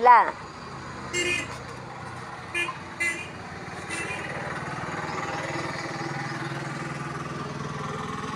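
A few short horn toots, then a passing motor vehicle's engine that rises to a steady drone a few seconds in and slowly fades.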